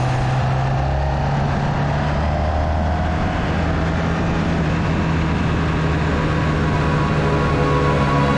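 Motorcycle engine running as the bike speeds up, its pitch rising over the first few seconds and then levelling off, over a rush of wind noise.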